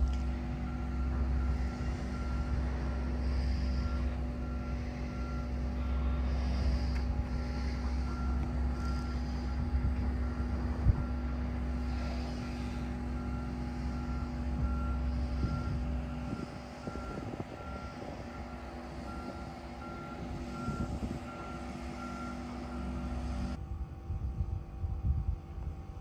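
A vehicle's reversing alarm beeping steadily, about once a second, over a low engine rumble. The rumble eases about two-thirds of the way through, and the sound cuts off suddenly just before the end.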